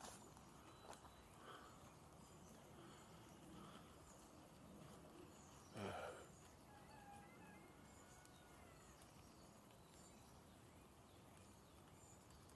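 Near silence: faint outdoor ambience, with one brief soft knock about halfway through and a few faint bird chirps just after it.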